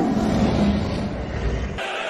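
Low, dense rumbling sound effect from a film soundtrack, set over a snowy night. It cuts off suddenly near the end, when choral music comes in.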